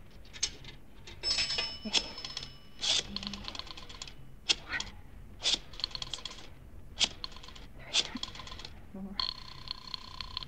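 Radio-drama sound effect of a pay-telephone call. A nickel drops into the coin slot and rings the coin chime, then the rotary dial clicks off several numbers in short runs of clicks, and a telephone ring tone sounds near the end.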